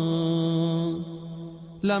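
Melodic Arabic devotional recitation: the reciter's voice holds one long, steady note at the end of a phrase, fades after about a second, and the next phrase begins near the end.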